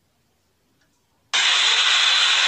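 Near silence, then a loud, steady rushing noise cuts in abruptly a little over a second in: the soundtrack of a phone-recorded outdoor street video.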